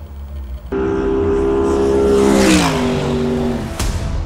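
Race car passing at speed: its engine note comes in suddenly, holds steady, then drops in pitch as it goes by about two and a half seconds in. A sharp click near the end.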